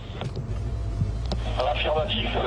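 Low engine and road rumble inside a moving car's cabin, with a few sharp clicks.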